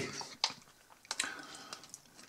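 A few light clicks and scrapes of a plastic fork against a plastic tub as it is pushed through sausage salad.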